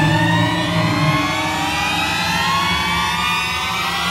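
Horror-score sound effect: a low steady drone under many slowly rising, siren-like tones building tension.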